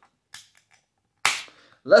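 A 355 ml aluminium beer can's pull tab cracked open: a faint click, then a sharp pop with a short hiss about a second and a quarter in.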